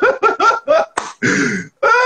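People laughing hard: a run of quick, short bursts of laughter in the first second, a breathy exhale, then a longer laugh near the end.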